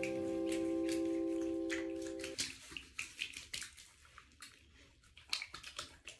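Background music fades out on held notes and stops about two seconds in. Then come faint, scattered small water splashes and drips of someone washing in a bathtub.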